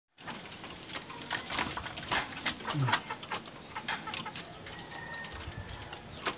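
Irregular sharp clicks and light scratches, many to the second, from junglefowl pecking and scratching among gravel and debris.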